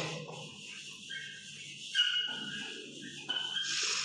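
Chalk writing on a chalkboard: a series of short scratching strokes with high-pitched squeaks.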